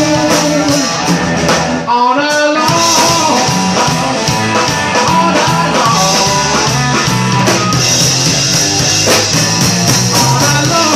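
Live blues-rock band playing loud: electric guitar over a drum kit, with a man's singing voice, and bending notes about two seconds in.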